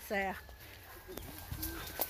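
A short voiced call falling in pitch at the very start, then quiet outdoor background with faint scattered ticks and a thin, steady high tone lasting about a second and a half.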